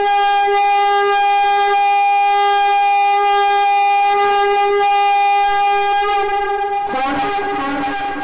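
A single long horn blast held on one steady note, the trumpet call of a channel intro jingle. About seven seconds in it fades under music that starts up.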